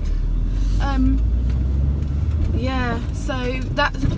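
Steady low rumble of a car's engine and tyres heard from inside the cabin while driving, with a woman's voice saying a few short words about a second in and again near the end.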